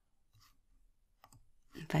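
Faint computer mouse clicks, the sharpest a little over a second in, as the browser page is refreshed. A woman starts speaking near the end.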